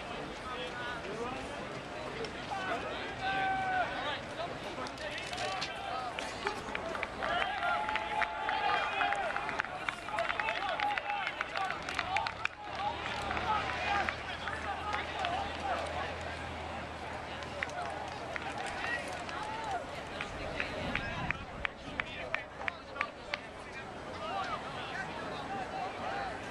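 Voices of many people talking and calling out across an outdoor athletics field, with no single speaker close to the microphone.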